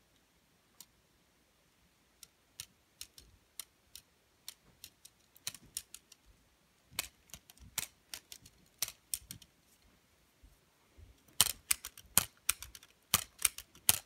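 Plastic LEGO Technic beams and pins of a hand-worked four-bar-linkage puncher clicking and clacking as the arm is snapped out and back. The clicks come singly and sparsely at first, then faster and louder in the last few seconds.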